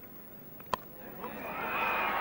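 A single sharp crack of a cricket ball off the bat, followed a moment later by a crowd's cheer that swells steadily as the close catch is taken.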